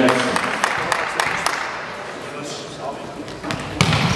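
A volleyball striking the floor and hands in a large sports hall: several sharp, echoing thumps over crowd chatter, with a sudden louder burst of noise near the end as play starts.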